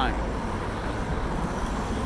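Steady street traffic noise: the low rumble of cars passing on a city road.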